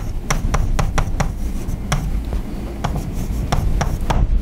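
Chalk writing on a chalkboard: an irregular run of sharp taps and short scrapes, about three to four a second, as a formula is written, over a steady low hum.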